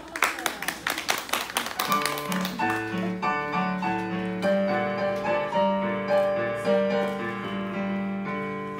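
A quick run of hand claps for about the first two seconds, then keyboard music: steady held chords over a moving bass line, playing as a dance accompaniment.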